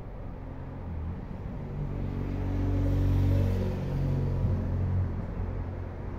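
A motor vehicle passing by, its low engine hum growing to a peak about three seconds in and then fading away.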